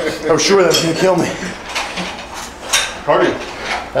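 Metal parts of a cable gym machine clanking and rattling as it is handled, with a few sharp clicks, one loudest about two and a half seconds in.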